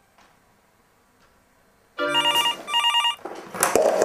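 Near silence for about two seconds, then a desk telephone rings in a quick double ring, two short trilled bursts. Near the end the ring gives way to a clatter as the handset is picked up.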